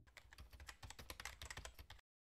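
Near silence, with faint, rapid, irregular clicking.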